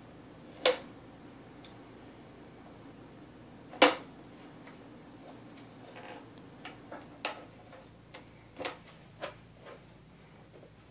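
Hard plastic toys knocking and clacking as a baby handles a plastic bucket with a plastic handle. There are two sharp knocks, one about a second in and a louder one about four seconds in, then a run of lighter irregular taps in the last few seconds.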